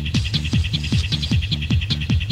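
Techno music: a kick drum pounding about four times a second under a busy, bright hi-hat pattern, with a hissing cymbal wash over the first second and a half.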